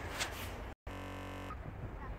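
Faint outdoor street ambience, broken just under a second in by a brief total dropout and about half a second of steady buzzing at a splice in the recording, then the faint low outdoor rumble again.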